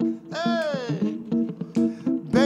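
Live band music: electric guitar and bass holding a chord, with a long note that slides down in pitch about half a second in.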